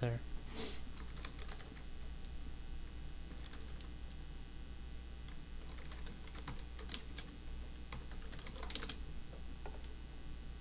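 Typing on a computer keyboard: scattered keystrokes, with a quick run of them about six to seven seconds in and another near nine seconds, over a steady low hum.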